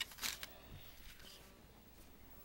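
A few short clicks and rustles of hands handling objects in the first half second, then faint room hiss.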